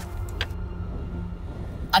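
Low, steady rumble of an idling four-wheel-drive engine, with a single sharp click about half a second in.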